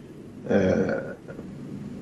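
A single brief, throaty vocal noise from a man, about half a second long, starting about half a second in, between stretches of low room noise.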